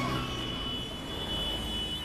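Road traffic noise: a steady wash of passing vehicles, with a faint thin high tone running through it.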